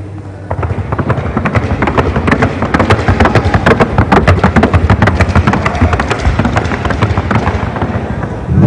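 Horse's hooves striking a wooden sounding board (tabla) in a fast, even stream of sharp beats, starting about half a second in. This is the gait check on the board, where the evenness of the horse's steps is heard.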